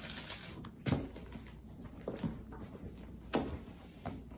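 Pages of a Bible being leafed through by hand: soft rustling broken by a few sharp page flicks, about a second in, a little after two seconds, and near the end.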